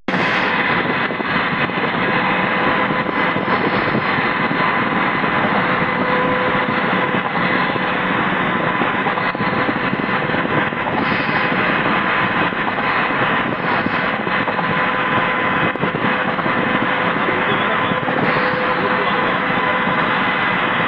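Steady rush of tyre and wind noise from a car driving at motorway speed, with a faint constant hum underneath.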